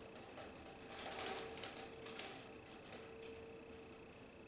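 Quiet room tone with a faint, steady electrical hum, and a soft rustle about a second in.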